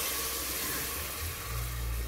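Sauce sizzling in an aluminium pressure-cooker pot with broth freshly poured in and being stirred with a spoon: a steady hiss with a low rumble beneath.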